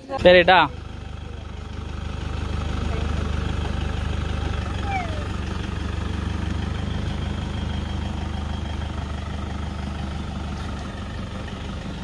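Toyota Innova 2.5 diesel engine running steadily at low speed as the car moves off, a low hum that swells for a couple of seconds and then eases a little.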